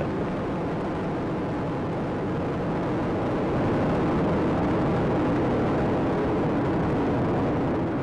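Space Shuttle's solid rocket boosters and main engines firing during ascent, about forty seconds after liftoff: a steady rumbling noise that grows a little louder about three and a half seconds in.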